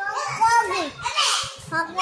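Young children's voices: high-pitched shouting and vocalizing without clear words as they play, loudest about a second in.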